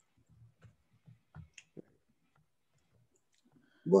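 A few faint, irregular clicks and soft low bumps during a pause in a man's talk, then the start of a spoken word at the very end.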